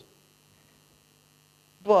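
Faint, steady electrical mains hum with a thin high tone above it, in a pause in a man's talk; his speech resumes near the end.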